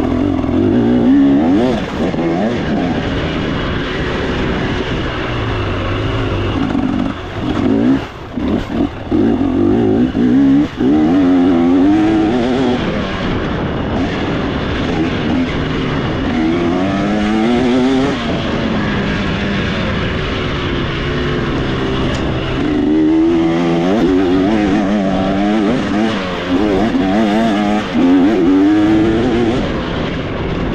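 Off-road racing motorcycle engine revving up and down repeatedly as the bike is ridden hard through a trail section, the throttle chopped and reopened several times about eight to eleven seconds in.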